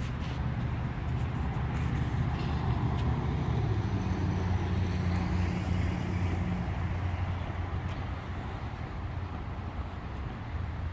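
Low, steady engine drone of a motor vehicle on the road nearby, loudest around the middle and fading toward the end.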